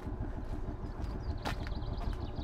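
A distant old tractor engine running steadily, with a single sharp click about one and a half seconds in.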